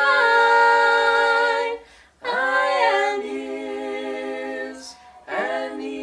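Two women and a man singing a cappella together in long held notes, in three phrases broken by short breaths, the second opening with a rising slide in pitch.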